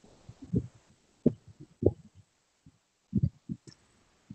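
Scattered short, dull low thumps at irregular intervals over a video-call microphone line, like a microphone or desk being bumped.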